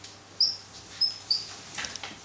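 Dry-erase marker squeaking on a whiteboard: three short high squeaks as digits are written, then a softer scrape near the end.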